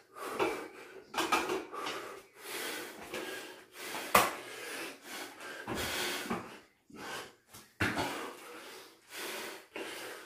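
Heavy, laboured breathing from a man working through burpees and pull-ups, a noisy breath about every second. A sharp thud about four seconds in as he drops to the floor mat.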